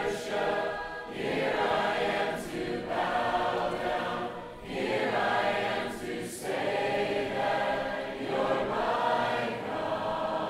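A congregation of many voices singing a hymn together a cappella, with no instruments, in phrases with short breaks between them.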